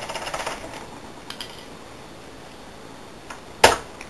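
Small metallic clicks and scraping of a lock pick working the pins of a TESA T60 euro cylinder, dense in the first second, then a few faint ticks and one loud, sharp click near the end.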